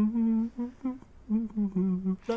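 A young man's closed-mouth whimpering hum, a string of short 'mm' sounds that rise and fall, from the one whose foot was just hurt by a falling fan.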